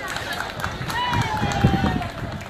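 Light, scattered applause from a crowd, with one long falling call from a voice in the second half.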